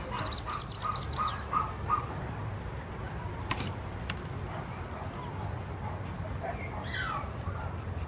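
A small bird chirping in a rapid, high twittering burst for about a second and a half near the start, with a faint falling call later, over steady outdoor background noise.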